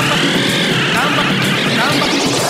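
Tech house mix with a pitched sweep effect over the track. It rises, peaks about a quarter of the way in, then glides back down.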